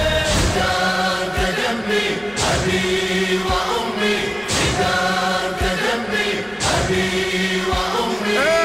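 A Shia mourning chant for Husayn sung by a male choir in long, held notes over a heavy beat about once a second.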